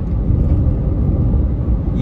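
Steady low rumble of road and engine noise inside a car's cabin while it is being driven.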